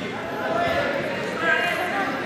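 Several voices shouting and calling out at once in a reverberant gym, typical of spectators and coaches yelling during a wrestling bout.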